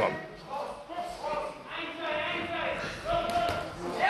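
Voices calling out at ringside during a boxing bout, several separate shouts in a large hall, quieter than the commentary.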